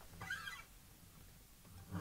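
Near silence, broken once by a faint, short pitched sound shortly after the start.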